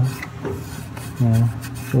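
Fingers rubbing and scratching over a rubber coolant hose and its fitting, crusted with dried green coolant from a leak, in a few short strokes. A brief voiced sound about a second in, and speech begins at the very end.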